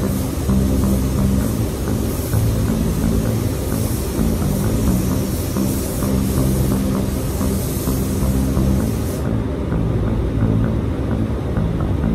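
Background music with steady low notes, over the high, even hiss of a compressed-air paint spray gun spraying blend areas; the hiss cuts off about nine seconds in.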